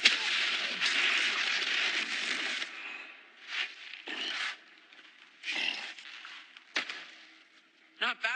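A boxing-glove punch lands with a sharp smack, followed by a long, loud crash of about two and a half seconds as the struck fighter is knocked back. After that come several shorter thuds and scuffs, with one sharp knock near the end.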